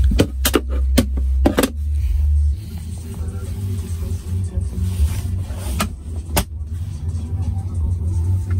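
Music with heavy bass playing from a car stereo inside the cabin, with a cluster of sharp clicks and knocks in the first two seconds and two more near the end, as the centre console is handled.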